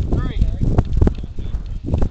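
Strong wind buffeting the camera's microphone in irregular gusty thumps. A brief pitched call with a sliding, falling pitch sounds about a quarter second in.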